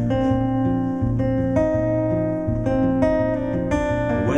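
Acoustic guitar playing an instrumental passage of a live folk-country song, a run of held notes that change about every half second.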